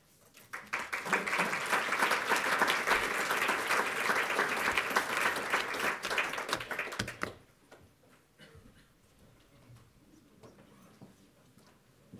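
Audience applauding, building up about half a second in and stopping abruptly about seven seconds in.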